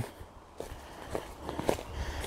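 Quiet footsteps on a woodland path covered in dry leaf litter and twigs, a few soft steps spread through the second half.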